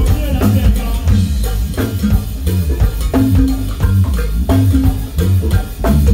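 A live band playing through a PA: a drum kit keeping a steady beat under a heavy bass line and sustained pitched notes.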